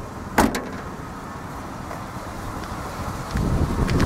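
The rear liftgate of a 2006 Ford Explorer shutting with a single thud about half a second in. A steady low background follows and grows into a louder rumble near the end.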